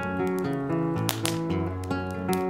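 Acoustic guitar picking a melody of plucked notes, with a sharp percussive hit a little over a second in.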